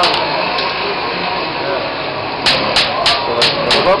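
Hand hammer striking metal on a small anvil in a metalworker's shop, a quick steady run of blows about four a second that starts about two and a half seconds in, over a busy background murmur.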